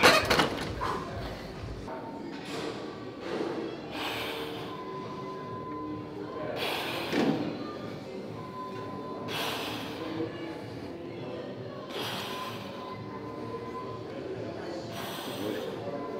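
A man breathing out hard with a grunt about every three seconds as he presses a barbell on an incline bench, one breath per rep, over background music with steady tones.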